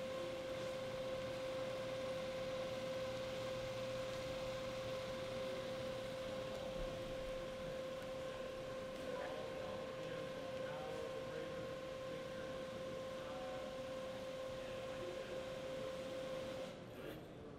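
A steady, unchanging high-pitched electronic whine with a fainter tone above it, over a low background hiss.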